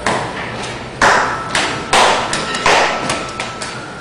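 An irregular run of sharp thumps and slaps from a dancer moving about on the floor. There is one hit at the start, then a quick cluster of about six between one and three and a half seconds in, the loudest in the middle.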